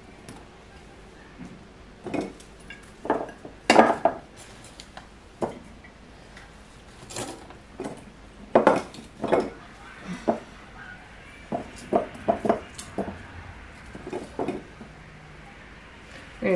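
Irregular clinks and knocks of glass mason jars and kitchen items being handled as onion pieces are packed into the jars: about a dozen scattered taps, the loudest about four and nine seconds in.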